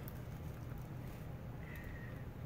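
Quiet room with a steady low hum, and faint rustles and clicks of a plastic pepperoni package being handled.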